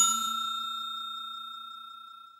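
Notification-bell ding sound effect ringing out with a clear high tone and fading away slowly.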